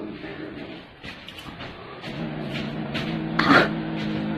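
Grey kitten growling low and steadily while clutching a feather toy in its mouth, a possessive growl over its prey, swelling from about halfway in. A few small clicks and a short noisy burst come near the end.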